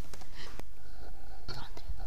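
Faint whispering in short hushed snatches, over a steady low hum.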